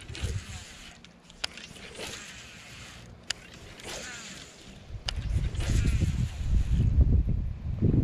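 Rod and baitcasting reel handling during a hook set on a bass: a few sharp clicks and scraping sweeps, then about five seconds in a heavy low rumble of the kayak and camera being jostled as the hooked fish runs.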